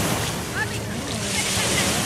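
Surf washing onto a sandy beach, a steady rushing noise, with wind on the microphone.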